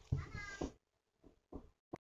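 A short high-pitched call of about half a second, its pitch falling slightly, followed by two faint brief taps near the end.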